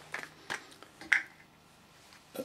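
A few faint, short clicks and light knocks from small tools being handled on a wooden workbench.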